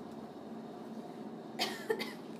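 A person coughing once, short and sharp, about a second and a half in, over a steady low hiss of room noise.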